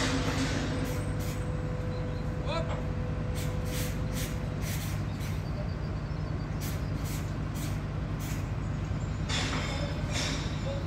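Heavy construction machinery diesel engines running steadily at the beam lift, a constant low drone, with short sharp noises about once a second.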